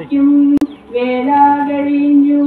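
A woman singing a devotional verse into a microphone in long, slow, held notes. The singing breaks off briefly with a sharp click a little over half a second in, then goes on.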